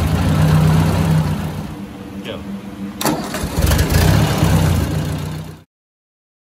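1956 Ford 600 tractor's four-cylinder gasoline engine running just after being started on its freshly cleaned carburetor. It falls off about two seconds in, a sharp click comes about three seconds in, and then it picks up again before the sound cuts off abruptly near the end.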